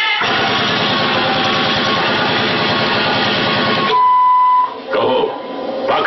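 Loud, dense soundtrack of a staged dance-drama. About four seconds in, a single steady beep-like tone cuts in for under a second, followed by a voice.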